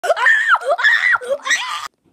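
A young boy screaming with his mouth full of chewy candy: three high-pitched screams that rise and fall, cutting off suddenly near the end.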